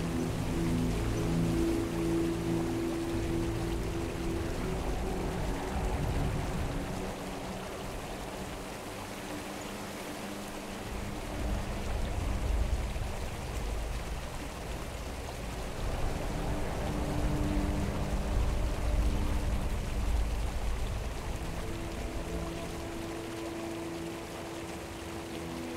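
Soft ambient music of slow, held low chords that change every few seconds, over the steady rush of a shallow stream flowing among snow-covered rocks.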